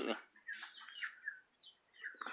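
A few faint, short bird chirps.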